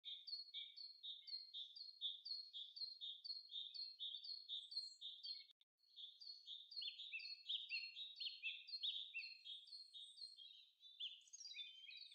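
Faint birdsong: a steady run of quick, high chirps, about three a second, with a brief break about five and a half seconds in.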